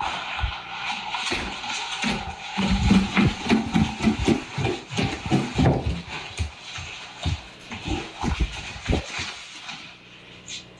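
A rapid, irregular run of knocks and rattles from inside a house's walls, picked up by a security camera. The knocks come thickest a few seconds in and thin out toward the end, over a steady hiss.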